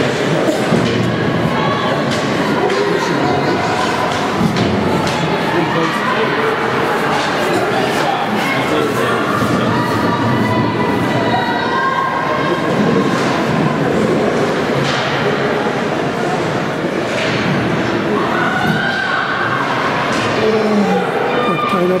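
Ice hockey play in a rink: repeated knocks and thuds of sticks, puck and players against the ice and the boards, with voices of players and spectators shouting.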